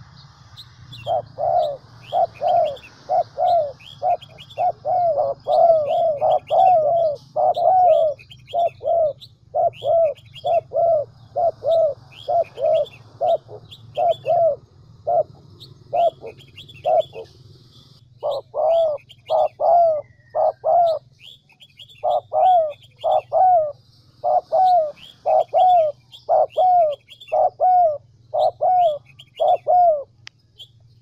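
Spotted dove cooing: a long run of repeated arched coo notes, about one to two a second with a couple of short breaks. Small birds chirp faintly and high behind it over a steady low hum.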